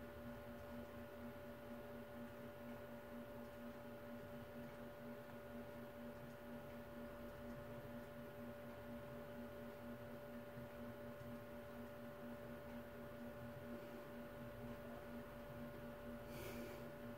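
Faint, steady electrical hum over room tone, with the television's sound muted.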